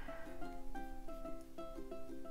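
Background music: a light tune of quick, short plucked-string notes.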